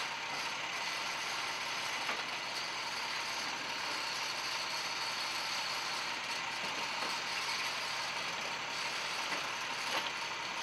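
Steady mechanical running noise with a few faint clicks.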